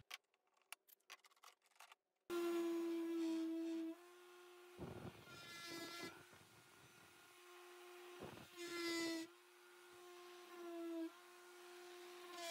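A cordless random orbit sander starts about two seconds in, after a few faint clicks, and runs with a steady hum that rises and falls in level as it sands the edges of a glued-up hardwood tray to take off residual glue.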